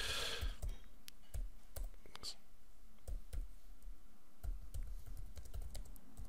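Typing on a computer keyboard: a run of irregular, fairly faint keystrokes.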